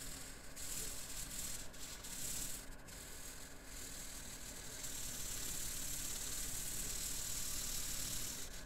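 Blue felt-tip marker scribbling on paper in quick back-and-forth strokes while colouring in a shape, a high, scratchy rubbing. The strokes pause briefly a few times in the first half, then run on steadily from about halfway.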